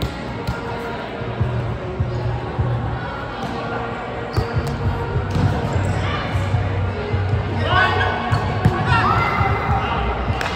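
Volleyballs being struck and bouncing in a large echoing hall, sharp thuds scattered through, with players' voices and calls, a couple of them louder near the end.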